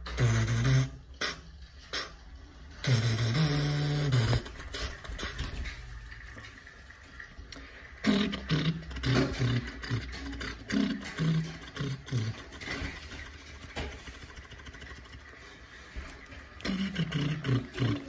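A man's low wordless voice in short hums and drawn-out tones, with clicks and rustles from small plastic toy car parts and a paper leaflet being handled.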